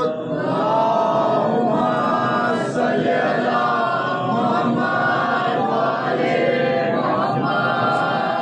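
A chorus of men chanting a noha, a Muharram lament, together in unison.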